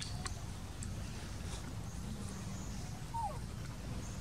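Monkeys grooming over a steady low outdoor rumble, with a few faint clicks and one short high squeak about three seconds in.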